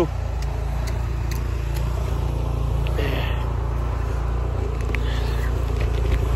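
An engine running steadily, a low even drone that holds at one level throughout.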